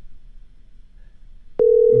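Quiet for about a second and a half, then a telephone ringback tone starts: one steady, loud tone at a single pitch, the sound of an outgoing call ringing on the other end and not yet answered.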